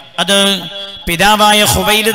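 A man's voice preaching in a chanting, sing-song delivery, with long notes held on one pitch, in two phrases with a short break about a second in.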